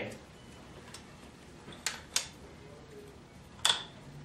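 Three light clicks from hands handling the bicycle's front end at the headset and stem: two close together about two seconds in and a sharper one near the end, over faint room noise.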